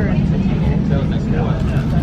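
Steady low rumble of an airport terminal gate area, with indistinct voices in the background.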